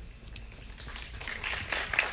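A patter of light knocks and rustling that grows louder from about a second in.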